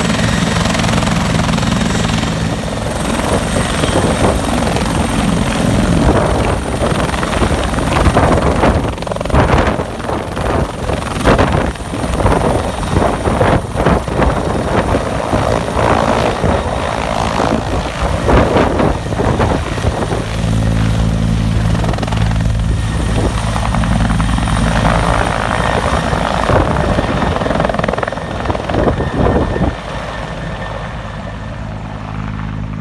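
Air-ambulance helicopter's turbine engines and rotors running loud on the ground, then lifting off into a low hover and climbing away. The middle stretch is rough and gusty, a steady low hum returns from about two-thirds of the way through, and the level drops sharply at the very end.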